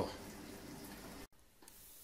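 Faint steady hiss of a running reef aquarium's water flow and pumps, cut off abruptly about a second and a quarter in, after which it is near silent.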